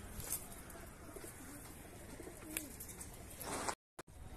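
Domestic Teddy high-flyer pigeons cooing softly, low warbling calls over a faint background hiss; the sound cuts off briefly just before the end.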